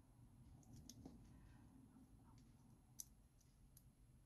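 Near silence with a few faint, small clicks, the clearest about three seconds in: hands handling a cord bracelet and its metal slide charms.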